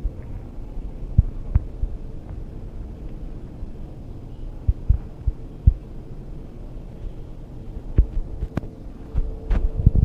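A steady low hum with an even tone, broken by irregular soft low thumps. A cluster of sharper clicks and knocks comes near the end.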